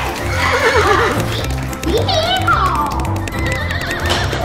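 Background music with a steady beat, with horse whinnies laid over it. The clearest whinny comes about two seconds in and falls in pitch with a quaver.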